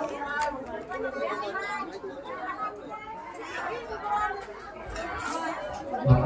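Several people chattering at once, with no single voice standing out.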